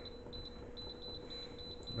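Quiet room tone in a small kitchen, with a faint steady high-pitched whine and a fainter low hum; no distinct event such as a button beep stands out.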